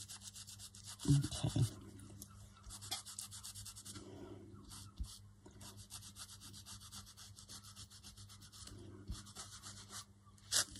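Fingertips rubbing quickly back and forth over a dampened paper print glued to a journal page, in a fast run of scratchy strokes broken by a few short pauses; the wet paper is being rubbed away to thin and knock back the image. A few low bumps come about a second in.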